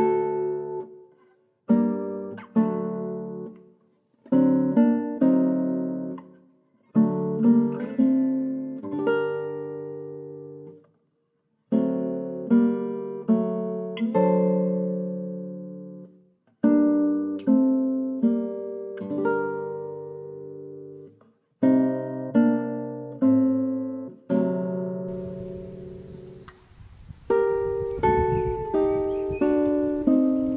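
Background music on solo acoustic guitar: plucked chords and notes in short phrases, each ringing and dying away before a brief pause. Near the end a low, steady background noise joins the guitar.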